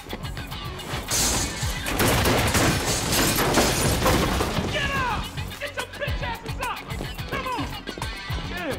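Action-film soundtrack: music with a steady beat, cut by a loud crash with shattering about a second in and a dense stretch of crashing noise after it. The music comes back with short falling swoops near the end.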